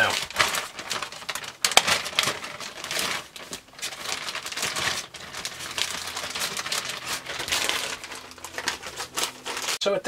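Clear plastic zip-top bag crinkling and rustling as it is handled and the proofed bread-dough balls are taken out of it, with many small irregular crackles throughout.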